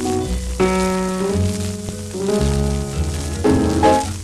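Music from an old 78 rpm shellac record: a melody over guitar and rhythm accompaniment, with the disc's crackling surface noise running underneath.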